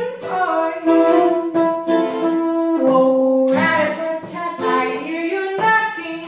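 Straight soprano saxophone playing a melody of long held notes over a strummed acoustic guitar.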